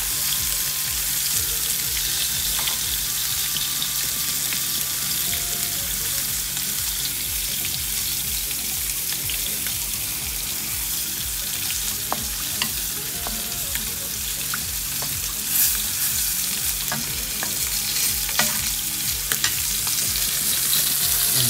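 Tomato sauce in a pan sizzling and bubbling on the stove after water has been added: a steady hiss with scattered small pops, a few louder ones near the end.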